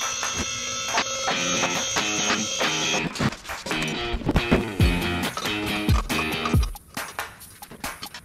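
Background music with guitar and a beat; deep drum hits come in during the second half.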